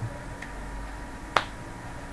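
A single sharp click about a second and a half in, with a fainter tick before it, over a steady low room hum.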